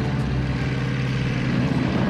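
Tank engine running with a steady low drone.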